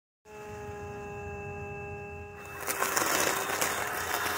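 Ambrogio L60 Elite S+ robot lawn mower's electric motor humming steadily in several tones. About two and a half seconds in, a louder crackling rush comes in as it mows over dry leaves and chops them.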